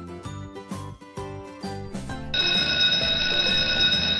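Light children's background music with short plucked notes, then, a little past halfway, a loud steady electric bell ring that holds for about two seconds over the music: a school-bell sound effect.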